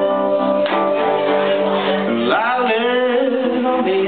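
Live band playing a song with electric guitars, keyboard and accordion over held chords; a voice comes in singing about two seconds in.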